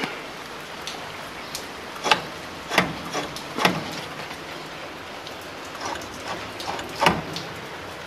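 A few scattered light clicks and knocks, irregularly spaced, over a faint steady background hiss.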